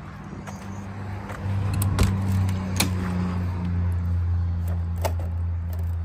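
A travel trailer's metal entry door being opened and stepped through: a few sharp clicks and knocks from the latch, door and entry steps, over a steady low hum that grows louder after about a second and a half.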